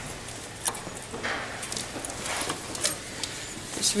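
Light metallic clicks and a short scrape as brake pads are worked out of a disc-brake caliper bracket by hand.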